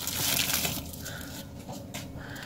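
Plastic bubble wrap rustling and crinkling as it is pulled off a small boxed bottle of nail polish, loudest in the first second, then quieter handling.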